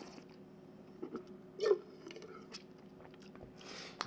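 Faint mouth sounds of sparkling wine being worked around the mouth and spat into a stainless steel spit cup: a few soft wet clicks, a short sound about one and a half seconds in, and a brief hiss near the end.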